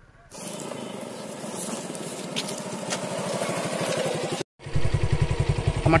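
Motorcycle engine running while the bike rides along a dirt track, with air noise, growing gradually louder. Just before the end it cuts out abruptly, and then a Suzuki Gixxer's engine is heard up close, louder and pulsing steadily at idle.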